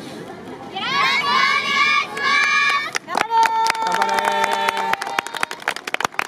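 A group of children shouting a call together, then about halfway through the dance music starts, with held electronic tones and sharp percussive beats.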